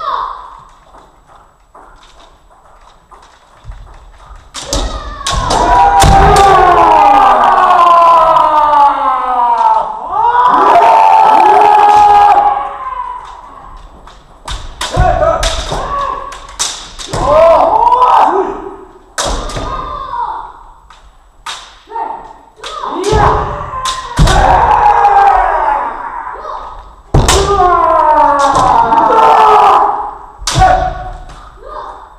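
Kendoka in a large hall shouting long kiai, several voices overlapping and falling in pitch, mixed with sharp cracks of bamboo shinai strikes and low thuds of stamping feet on the wooden floor, all echoing. The shouting starts about four seconds in and comes in waves.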